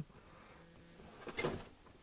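Handling noise as a hand-held camera is moved back: one brief rustling scuff about one and a half seconds in, over low room tone.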